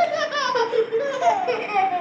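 A baby laughing: a string of short, high-pitched laughs, each falling in pitch, that stops near the end.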